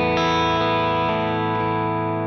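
Suhr Alt T Pro thinline electric guitar with Thornbucker pickups, played clean with the five-way selector in the second position (one humbucker coil-split), giving an in-between Tele sound. A full chord is strummed just after the start and left to ring out.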